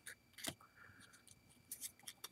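Faint handling of a stack of Pro Set Power football trading cards: light clicks and slides as cards are flicked from the front of the stack to the back, with a sharper click about half a second in and a couple more near the end.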